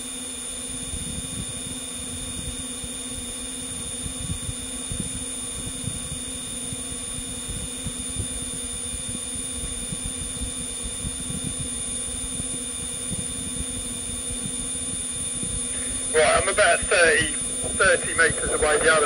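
A steady electronic hum of several fixed tones over an uneven low rumble. A man starts speaking near the end.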